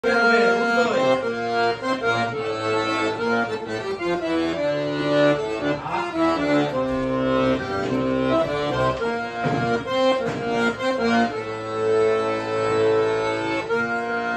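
Solo accordion playing a paso doble, a melody over chords that runs without a break.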